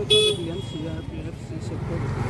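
People talking outdoors, with a short loud high-pitched tone just after the start, like a brief toot.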